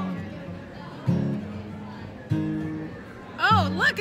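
Acoustic guitar music: plucked notes about once a second that ring and fade. A voice comes in briefly near the end.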